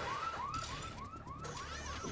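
Car alarm sounding: a rapid run of short rising electronic chirps, about four a second.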